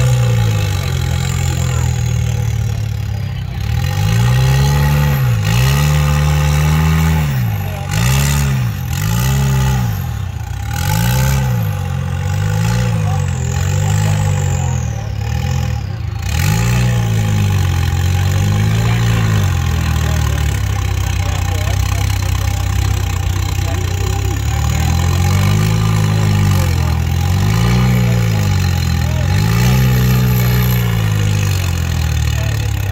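Rock crawler buggy's engine revving up and dropping back over and over, about once a second, as the throttle is worked through a crawl; it runs steadier for a few seconds about two-thirds of the way in.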